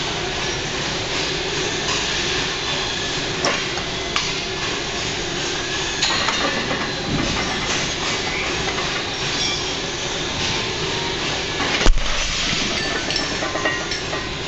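A loaded barbell with 45 lb iron plates is set down on rubber gym flooring after a heavy deadlift single, making one heavy thud near the end. A few light clinks of the plates come earlier, over a steady background noise.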